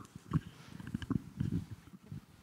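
Handling noise from a handheld microphone being passed from one person to another: a string of soft, irregular low bumps and rubs.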